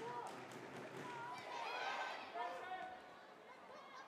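Faint football stadium ambience: scattered voices calling out over a low crowd murmur, fading a little near the end.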